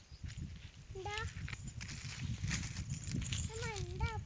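A goat bleating twice, short calls that bend in pitch, about a second in and again near the end. Under the calls runs a low rumble of wind on the microphone.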